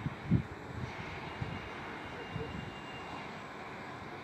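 Steady outdoor background hiss with a few low thumps on the microphone, the loudest about a third of a second in.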